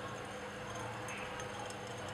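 Steady low background hum with faint constant tones and no distinct events.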